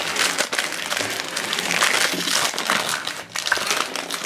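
A crinkly foil wrapper being torn open and peeled off a small fuzzy toy figure by hand: continuous crinkling and crackling.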